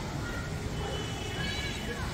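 Outdoor city ambience: a steady bed of background noise with faint distant voices, and a few high, thin calls about a second in.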